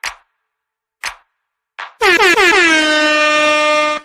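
Two short ticks about a second apart, then an air horn sound effect that blasts for about two seconds: its pitch wavers at the onset, then holds one steady tone before cutting off abruptly.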